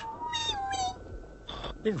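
A small cartoon creature's high, squeaky cry, sliding a little down in pitch and lasting nearly a second.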